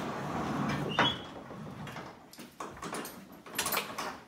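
Handling noises in a wooden horse stall: rustling at first, a sharp metallic clink with a brief ring about a second in, scattered small knocks, and a cluster of louder clicks and knocks near the end.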